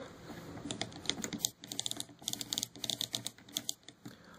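Light, irregular clicking of a plastic action figure's upper-arm joint being twisted by hand, the clicks coming thicker in the second half.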